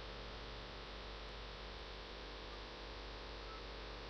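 Faint, steady electrical mains hum with a low background hiss from the recording chain, unchanging throughout.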